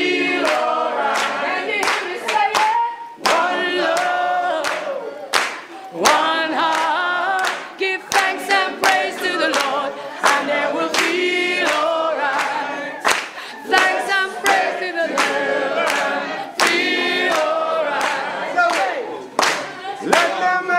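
A group of voices singing together, with hand clapping throughout.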